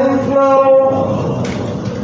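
A long held musical note that steps down slightly in pitch at the start, holds, then fades out about a second in.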